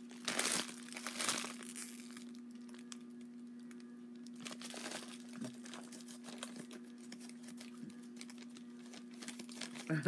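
Candy wrapper being crinkled in short bursts, loudest about half a second and a second in, with more crinkling around four and a half seconds, over a faint steady hum.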